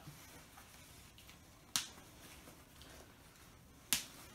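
Faint rustling of a lightweight down quilt's thin nylon shell being handled, with two sharp clicks about two seconds apart.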